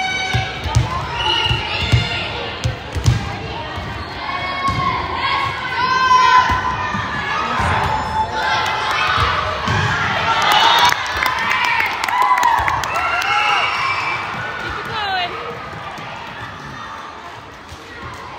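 A volleyball bounced several times on a hardwood gym floor, with girls' voices shouting and calling across the gym. The shouts build into cheering around the middle as a rally is played out and a point is won.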